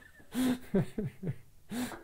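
Laughter: a string of short, breathy laughs.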